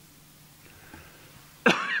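A man coughs sharply into his hand, about a second and a half into an otherwise quiet stretch of room tone.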